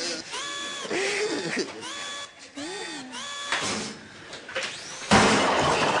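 Sci-fi electronic sound effects of a robot being switched on by remote control: a run of beeping tones that step and glide up and down in pitch, then a loud hiss of gas about five seconds in.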